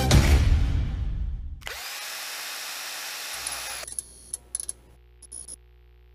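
Electronic logo-intro sound effects: a beat-driven intro sting dies away, then a harsh buzzing whoosh runs for about two seconds. After it come a few glitchy clicks over a faint low hum.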